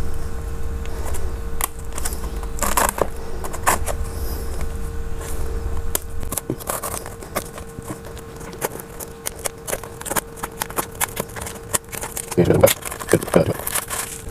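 A small cardboard box being handled and opened, with scattered crinkles and clicks of cardboard and plastic packaging, and a bubble-wrapped phone casing drawn out near the end. A low rumble sounds for about the first half and a faint steady hum runs underneath.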